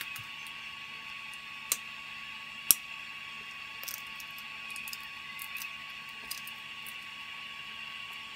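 Small 3D-printed plastic parts handled on a cutting mat, giving a few light clicks and taps, the sharpest about two and a half seconds in, over a steady background hiss with a faint steady whine.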